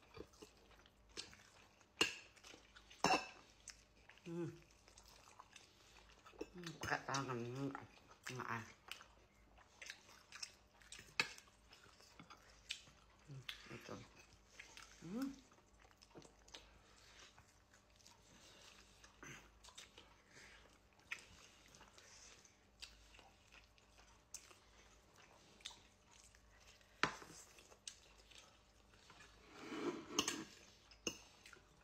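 A person eating with her fingers close to the microphone: soft chewing and many small wet mouth clicks and smacks scattered through. A few short murmured vocal sounds come a few seconds in and again around seven to eight seconds.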